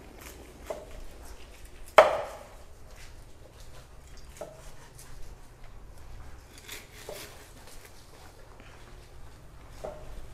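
Knives and a cleaver chopping sea fish into steaks on wooden chopping boards: irregular knocks of blade through fish into wood, the loudest about two seconds in.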